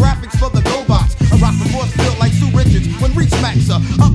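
1990s boom-bap hip hop track: a rapper delivering verses over a drum beat with a bass line.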